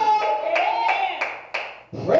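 Hand clapping in a steady rhythm, about three claps a second, five claps in all, with a drawn-out voice under the first second. It fades out near the end.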